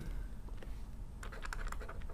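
Light clicks and taps of a stylus on a tablet while handwriting, clustered in the second half, over a low steady hum.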